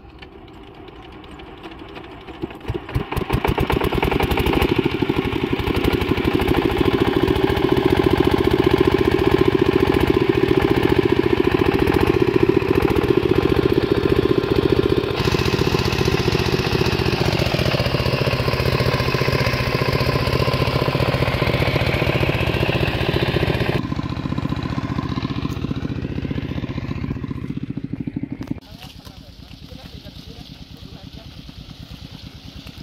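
Single-cylinder 8 HP diesel pump-set engine starting, catching about three seconds in, then running steadily and loud with an even firing beat while it drives the water pump. The sound drops off sharply near the end.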